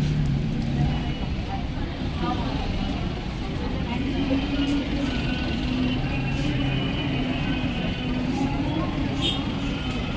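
Indistinct voices of people in the room over a steady low rumble.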